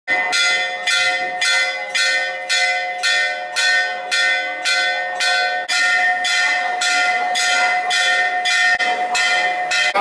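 A temple bell rung steadily, about two strokes a second, each stroke ringing on so that the tones overlap into a continuous ring.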